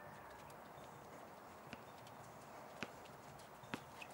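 A basketball bouncing on an outdoor hard court, dribbled three times about a second apart in the second half, over a faint steady outdoor hiss.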